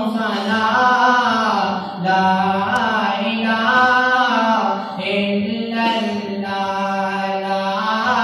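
A young man singing an Urdu Islamic devotional song about the kalma solo into a microphone, in long held notes that bend slowly up and down, with short breaths between phrases.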